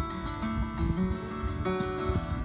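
Steel-string acoustic guitar played solo, a steady chord accompaniment with notes ringing between sung lines.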